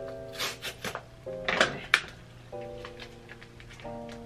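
Soft background music of held chords, over the crackle and rip of a foil sheet-mask pouch being torn open, loudest about a second and a half in.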